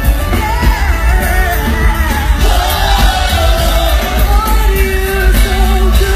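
Live concert music with a singer's voice carrying the melody over a heavy, steady bass, filling a large hall.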